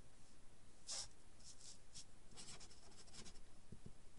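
Felt-tip marker writing on paper: faint, short strokes, with a quicker run of them in the second half as a word is written out.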